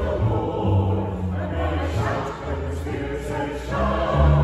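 A small mixed choir of men's and women's voices singing together, holding sustained notes that change about once a second.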